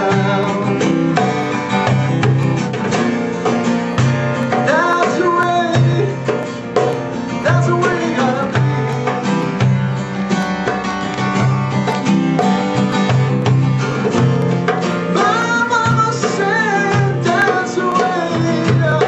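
Live acoustic music: a steel-string acoustic guitar played with a male voice singing, accompanied by a derbake (goblet drum) tapped by hand. The singing comes in about four seconds in and again near the end.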